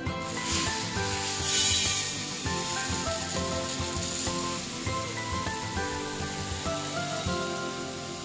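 Background music with a steady melody, over a soft continuous hiss and rustle of dried moth beans (matki) being poured from a plastic tub into a glass jar. A brief louder rustle comes about one and a half seconds in.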